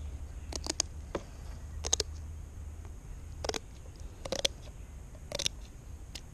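Scissors snipping through the rib bones of a fluke (summer flounder) one after another: a run of sharp, irregular clicks, some in quick pairs, about one to two a second.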